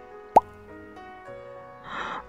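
A single short, sharp plop with a quick upward sweep in pitch, about a third of a second in, the loudest thing here. It sits over soft background piano music.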